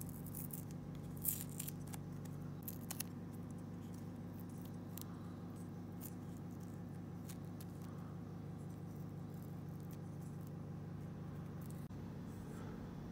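Masking tape being peeled off a varnished wooden lure body and crumpled in the fingers: a cluster of small crackles and ticks in the first few seconds, then sparse light handling ticks, over a steady low hum.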